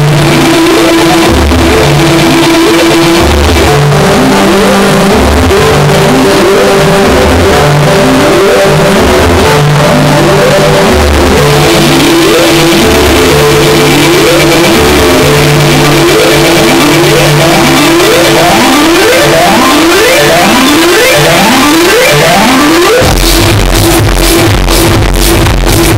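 Loud tech house music from a DJ's sound system. Over a bass line and a held synth note, rising synth sweeps repeat more and more often as a build-up. A steady kick-drum beat drops back in near the end.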